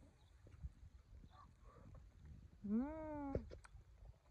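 Quiet, with faint soft noises, then about three seconds in a single short voiced call lasting under a second that rises and then falls in pitch.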